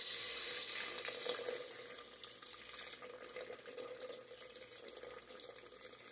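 A stream of water poured into an aluminium pressure cooker onto sautéed rice and fried chicken, adding the cooking water. The splashing is loudest for the first two seconds or so, then grows quieter as the pouring goes on.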